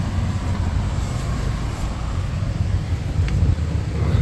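Steady low rumble of a car engine idling, heard from inside the cabin of a Hyundai i30 N Line.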